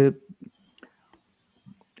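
A man's voice trailing off on a hesitant "uh", then a pause of near silence with a few faint ticks.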